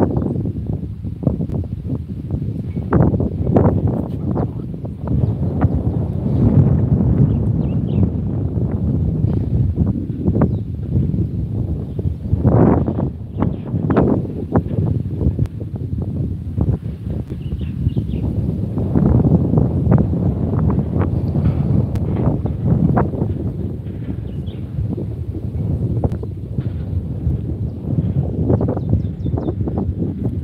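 Strong wind buffeting the microphone: a loud, gusting low rumble that swells and dips unevenly, with short thumps as gusts hit.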